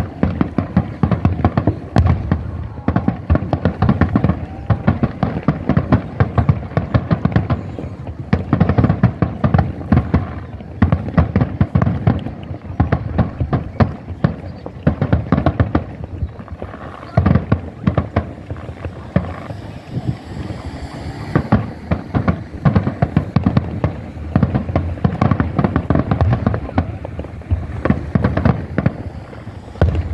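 Aerial firework shells bursting in a rapid, unbroken barrage of booms and crackles, several each second.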